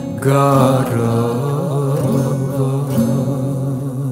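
Acoustic guitar playing a Balkan Romani love song in a stretch between sung lines, over a low held note.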